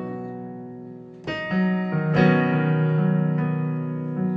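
Piano chords played on a keyboard in an instrumental gap: a held chord fades away, then new chords are struck a little over a second in and again around two seconds, ringing on steadily.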